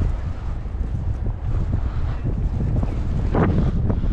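Strong wind buffeting the microphone in blowing snow: a steady low rumble, with a stronger gust a little over three seconds in.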